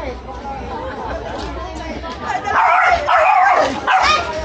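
A small dog barking in a quick run of high yaps during the second half, the loudest thing here, over people chatting.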